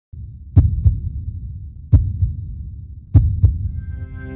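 Heartbeat sound effect: three double thumps about 1.3 s apart over a steady low drone, with a sustained chord swelling in near the end.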